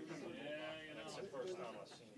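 Quiet, indistinct talk from people in the room, away from the microphones.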